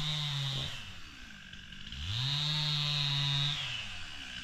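A small motor running at high revs that drops back to a low idle about a second in, then revs up again about two seconds in, holds steady for over a second and falls away again near the end.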